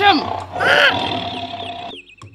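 A lion's roar as a sound effect, with a held musical tone underneath that fades out toward the end.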